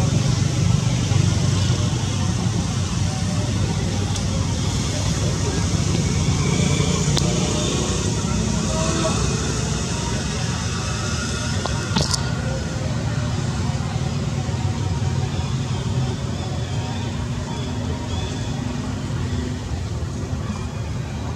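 Steady low outdoor rumble with faint voices in it, and a single sharp click about twelve seconds in.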